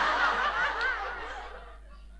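Studio audience laughter, loudest at the start and dying away in the second half.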